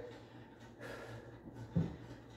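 Quiet breathing of a man holding a kneeling arm stretch, over a faint steady low hum, with one short low sound near the end.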